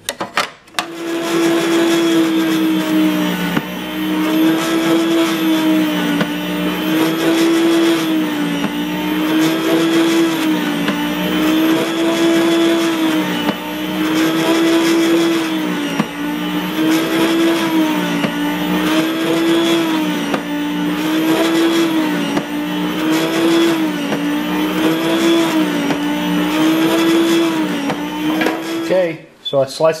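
Electric meat slicer's motor and spinning blade running steadily while cutting smoked pork belly into bacon slices. The hum dips slightly in pitch and recovers about every two seconds as the meat is pushed through the blade. It starts just after the beginning and stops shortly before the end.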